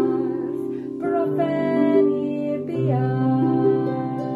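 A pedal harp playing chords over held bass notes while a woman sings an old Welsh cattle-calling song, her voice wavering up and down over the harp.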